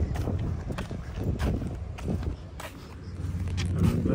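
Irregular knocks and clicks of handling and footsteps, over a low rumble of wind on the microphone.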